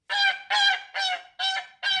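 Goose honking sound effect played through the Xiaomi Mi Smart Clock's small speaker by Google Assistant: a quick string of five short honks, about two a second, the punchline sound to a joke about geese.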